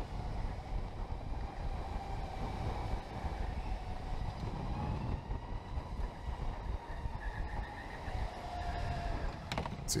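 Electric go-kart's motor whining faintly, its pitch rising and falling slowly with speed, over a steady low rumble from the kart on the track.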